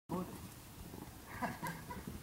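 Short snatches of indistinct talk from voices nearby, once right at the start and again in the second half.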